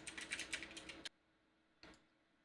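Computer keyboard typing: a quick run of keystrokes for about a second, then one more single click near the end.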